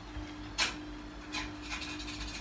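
A few brief rubbing scrapes, about half a second in, again near the middle and near the end, over a steady hum.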